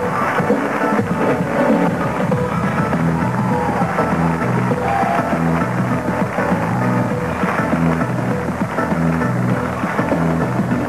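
Stage music with a repeating bass line.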